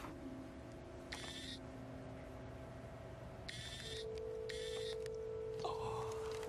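Film soundtrack of sustained, steady low tones, with a new held tone coming in about four seconds in. Three brief high-pitched bursts of sound effects fall over it, about a second in, at three and a half seconds and at four and a half seconds.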